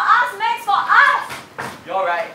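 Speech only: an actor's voice speaking lines of stage dialogue.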